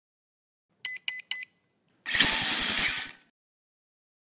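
Logo intro sound effect: three short electronic beeps in quick succession, then a loud buzzing whoosh about a second long with a rapid low flutter, which fades out.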